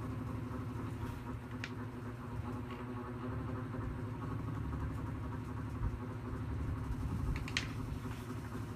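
A steady low mechanical hum runs throughout, with a couple of light clicks about a second and a half in and near the end.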